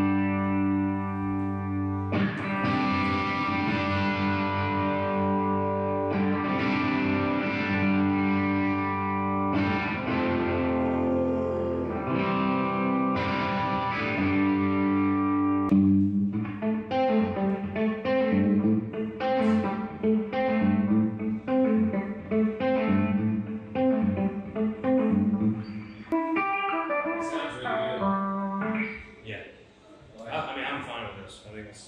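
Gibson ES-335 semi-hollow electric guitar played through a Blackstar amp: strummed chords left to ring and changing every few seconds, then from about halfway a quicker run of picked single notes and chord fills.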